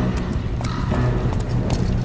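Horses' hooves clopping in an uneven run of knocks over a steady low rumble, as of a column on the move.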